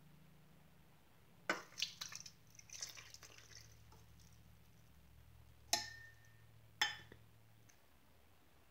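Milk poured from a stainless steel measuring cup into a stainless mixer bowl of thick peanut butter batter: faint splashing and dripping, with a few sharp metal-on-metal clinks of the cup against the bowl. One clink about six seconds in rings briefly.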